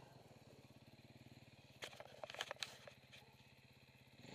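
Motorcycle engine running faintly and steadily at low revs, with a few sharp clicks and knocks about two seconds in.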